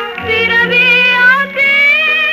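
A woman singing an old Sinhala film song from 1949. The melody line bends and wavers, with a short break between phrases about a second and a half in.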